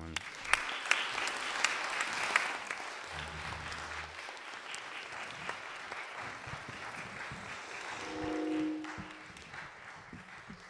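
Audience applause, full for the first few seconds and then thinning out. A brief held tone sounds near the end.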